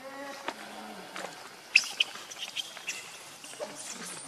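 Animal calls in forest undergrowth: a short pitched call at the start, then a run of brief high-pitched chirps and squeaks, the loudest a little under two seconds in.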